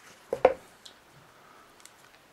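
Handling of a plastic smartphone and its clear silicone case: a short plastic knock about half a second in, then a couple of faint clicks as the phone is picked up.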